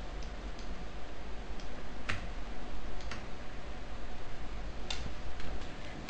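A few scattered clicks of a computer mouse as an image layer is dragged and resized on screen. The clearest come about two, three and five seconds in. A steady low hum and hiss from the recording run underneath.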